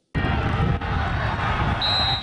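Ambient sound of a college football game: a steady wash of crowd noise that starts suddenly, with a high steady tone coming in near the end.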